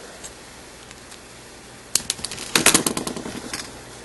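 Plastic modeling cutters snipping the plastic of a Rubik's cube corner piece: one sharp snap about two seconds in, then a quick run of smaller clicks.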